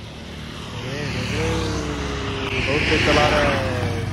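Road traffic passing close by: the noise swells as a vehicle approaches and goes by loudest about three seconds in, and its drawn-out engine note slides slowly down in pitch as it passes.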